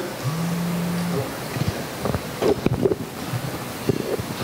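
A low, steady hum through the sound system that rises into place and holds for about a second. It is followed by a scatter of knocks and bumps from a handheld microphone being handled as it is passed to the next speaker and checked.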